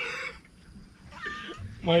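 A brief high-pitched animal call, just under half a second long, comes about a second in, with a man's voice starting just before the end.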